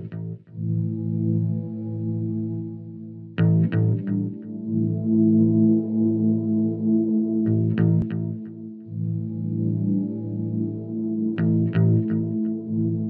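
Instrumental ambient music: sustained, ringing chords, with a new chord struck about every four seconds.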